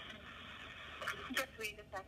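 Faint voice of the person on the other end of a phone call, coming through a smartphone's speakerphone, starting about a second in after a pause filled with line hiss.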